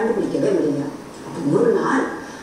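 A woman's voice in two stretches of smooth, rising-and-falling pitch, with a short quieter gap about halfway through.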